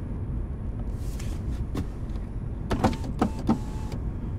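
A car's electric window being wound down, with a few clicks and a short motor hum in the second half, over a low steady rumble inside the car.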